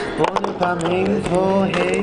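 Drawn-out male vocalising, a hummed or chanted tone held steady under a wavering second voice line. Clicks and knocks from the handheld camera are scattered through it.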